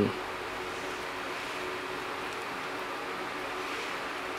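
Steady room noise: an even hiss with a faint steady hum, and no distinct clicks or knocks.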